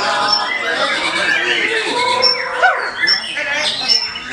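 White-rumped shama song: a dense run of quick whistles, chirps and sliding notes, with short high whistled notes recurring, over a background of people talking and calling.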